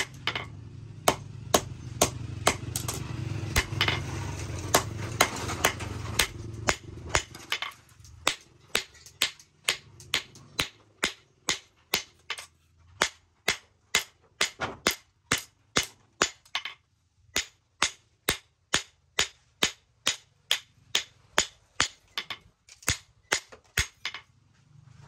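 Hand hammer forging a red-hot knife blade on a steel post anvil: sharp metallic blows in a steady rhythm of about two a second. A low steady hum runs under the blows for the first seven seconds or so, then stops.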